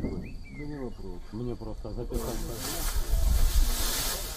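A man's voice talking in short phrases, not English narration. About two seconds in, a loud steady hiss cuts in suddenly under the voices and stays.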